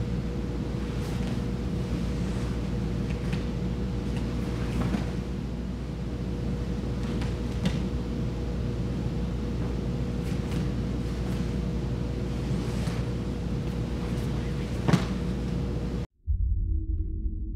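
Steady low room hum with a faint constant tone, under scattered soft rustles and knocks from two grapplers in gis moving on a foam mat; a sharper thump comes about a second before the end.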